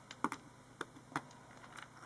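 About five light, separate clicks and taps of vintage rhinestone and glass brooches being set down and picked up among other jewellery on a table.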